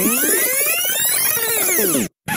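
Fast tape-rewind sound effect: a dense warble of many pitches that sweep up and then back down in one arch, then cut off suddenly.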